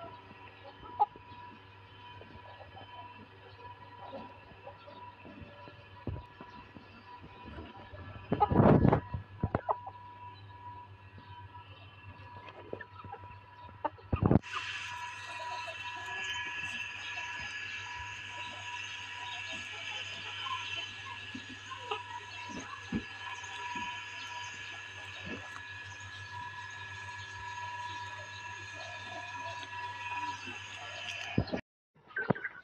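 Chickens clucking softly against a steady background hum, with a loud rustling bump about nine seconds in and a sharp knock about fourteen seconds in, after which a louder steady high-pitched hum continues.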